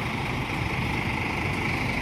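A coach's diesel engine idling steadily.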